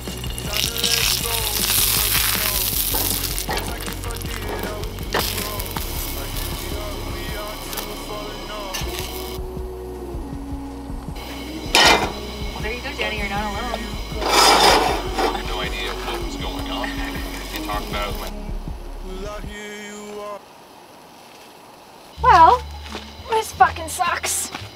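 Background music over pan frying: oil sizzling as floured eggplant slices fry in a skillet on a camp gas stove, with a few sharp knocks of utensils or pans.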